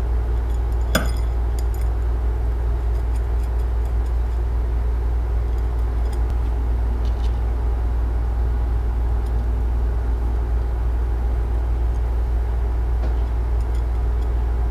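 A steady low hum, like a machine or fan running, with a few light metal clicks and clinks as a small brass collar is handled on a twisted steel rod.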